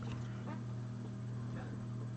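Faint handling of a stack of baseball cards as the top card is slid off by hand, over a steady low hum.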